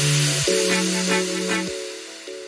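Electronic background music: held synth chords that change about half a second in and again near the end, growing quieter toward the close.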